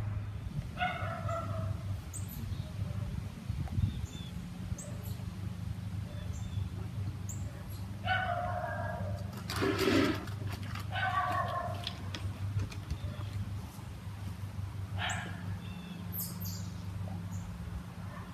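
Dogs barking in short bouts, about five times, stirred up by bears in the yard.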